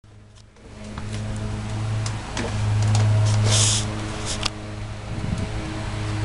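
Lawn mower engine running nearby as a steady low drone that swells and fades as it moves about, with a few clicks and a brief rustle of handling noise.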